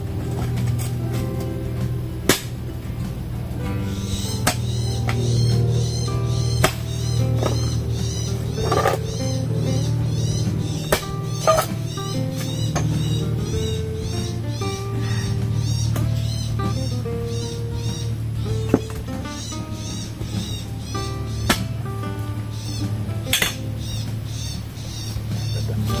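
Background music with a steady beat, over a few sharp knocks of a long-handled digging tool striking the soil.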